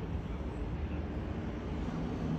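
Steady low engine rumble from distant traffic in the outdoor background.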